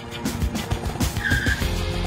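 Small go-kart engines running as two karts roll up side by side, with a brief high squeal a little after a second in, mixed with background music.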